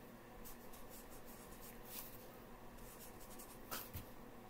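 Faint scratching and rubbing of hands working at a desk, with a soft knock near the end.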